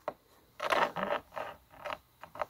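Clear plastic ruler slid along a tabletop by hand, a few short scraping rubs.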